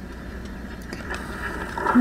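Steady low rumble inside a car with its engine running.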